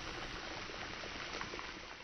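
A saucepan of water at a rolling boil, bubbling steadily and easing off slightly near the end.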